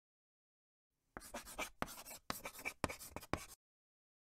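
Chalk writing on a blackboard: a quick run of about eight short scratching strokes, starting about a second in and stopping about half a second before the end.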